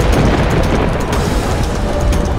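A loud rumbling rush of churning water and booms surges in at the start over dramatic background music.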